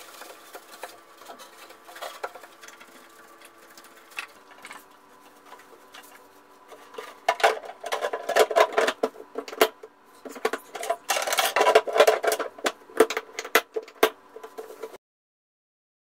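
Plastic housing of a reverse osmosis water purifier being handled: quiet scraping at first, then a busy run of clicks, knocks and rattles as the plastic cover is worked back into place. The sound stops abruptly shortly before the end.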